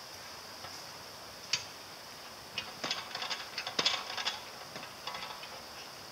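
Irregular sharp metallic clicks and ticks from a metal playground apparatus being worked by a child: one about a second and a half in, a dense run in the middle and a few more near the end.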